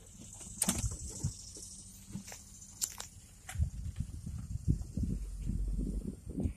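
Inside a slowly moving car: faint clicks at first, then from about halfway an uneven low rumble with bumps, typical of tyres rolling over a paved drive.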